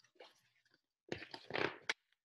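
A page of a large picture book being turned by hand: a faint touch at first, then a papery rustle about a second in that ends in a short snap as the page falls over.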